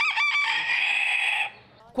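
A rooster crowing once: a few short, quick notes, then one long held note that stops about a second and a half in.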